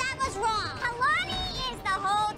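Women's raised voices, shouting angrily in an argument.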